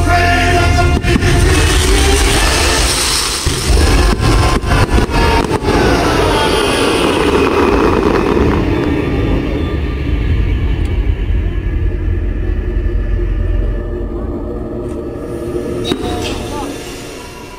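Fireworks going off: deep rumbling booms with sharp cracks, densest in the first half, thinning out and dying down after about nine seconds.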